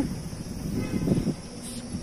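Outdoor street background noise in a pause between speech: a steady low rumble, with a faint brief higher sound about a second in.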